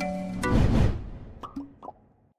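Short intro logo jingle: a held synth chord with a deep bass hit about half a second in, fading away, then three quick pops near the end.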